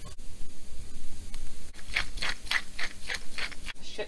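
Red pepper flakes shaken from a small spice container over a cast-iron skillet of browning plant-based ground meat: a run of about eight quick, scratchy shakes, roughly four or five a second, in the second half.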